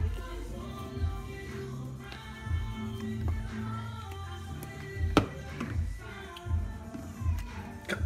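Background music with soft, regular low beats and held notes. A single sharp tap sounds about five seconds in.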